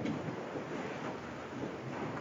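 Faint steady hiss of room tone and recording noise, with no distinct sounds.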